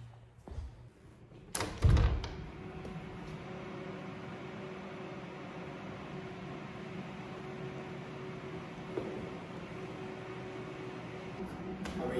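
A single heavy thump about two seconds in, like a door swinging shut, followed by a steady machine hum with a faint held tone underneath.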